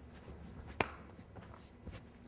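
Faint scuffling of feet on a training mat during a fast self-defense grapple, with one sharp smack a little under a second in and a couple of softer knocks near the end.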